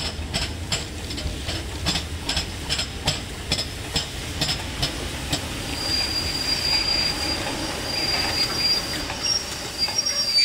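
LMS Black 5 4-6-0 steam locomotive 45212 passing close with its train of coaches, with a regular beat about three times a second over a steady rumble. About halfway through, as the engine and coaches come alongside, a high, thin, steady squeal sets in and holds to the end.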